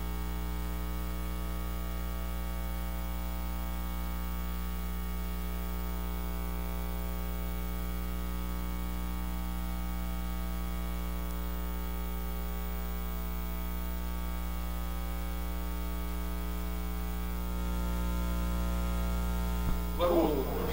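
Steady electrical mains hum, a buzz with many evenly spaced overtones over faint hiss, carried by the sound system. It grows slightly louder near the end.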